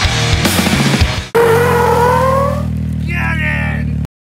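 Loud heavy-rock intro music with pounding drums and guitar. About a second in it breaks off suddenly and gives way to a held low drone with higher tones sliding upward.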